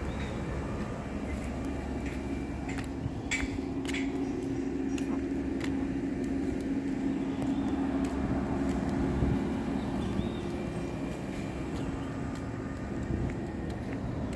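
Steady mechanical drone with a low humming tone, louder through the middle and easing off near the end, with a few light clicks early on.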